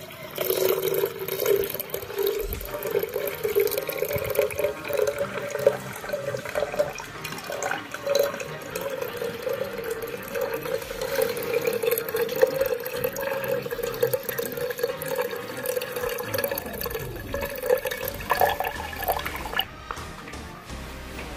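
Liquid poured in a steady stream from a glass beaker into a glass jug, stopping just before the end. This is the spent solution being decanted off the gold powder that has settled at the bottom of the beaker.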